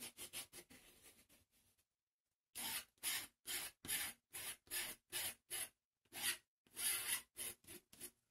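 Palette knife scraping acrylic paint across the painting surface in short, repeated strokes. The first strokes are soft; after a brief pause, a louder run follows from about two and a half seconds in, about two strokes a second.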